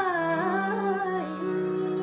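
A woman's voice singing the last drawn-out, gliding phrase of a ghazal. It falls and settles about a second in, over an accompaniment holding steady notes that ring on.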